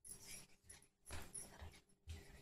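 Faint handling sounds in a few short, uneven bursts as a sweet is set out on a plate and the plastic container is moved aside on the stone counter.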